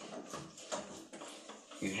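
Faint, scattered light clicks and rattles from a weighted grip-training handle hanging on its cable and clips as it is held. A spoken word begins near the end.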